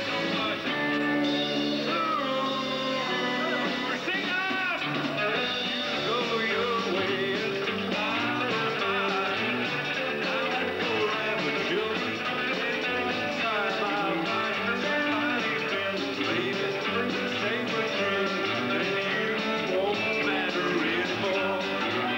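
Live rock and roll band playing a song on electric guitars and bass guitar, with a male voice singing in the mix.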